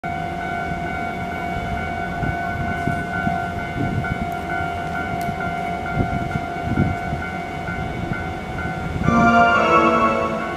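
Level-crossing alarm ringing steadily while a Keihan 3000-series electric train approaches with a low rumble. About nine seconds in, the train sounds its emergency horn, a loud chord of several tones that carries on at the end.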